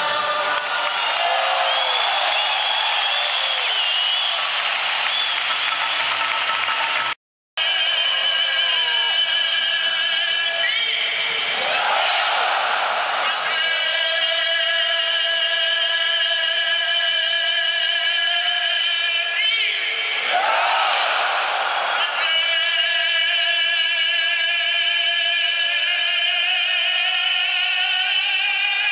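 Singing and music played over the stadium loudspeakers, held steady with a wavering pitch, while the crowd's noise swells twice, about twelve and twenty seconds in. The sound drops out briefly about seven seconds in.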